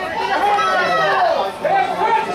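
Indistinct chatter of several voices talking over one another.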